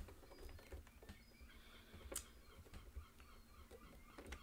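Near silence broken by faint, scattered small clicks of a screwdriver turning a screw into a PS5's metal SSD cover panel, the sharpest click about two seconds in.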